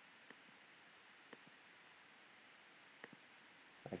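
A few sharp single computer mouse-button clicks, spaced a second or more apart, over near-silent room tone: the Zoom In button being clicked repeatedly.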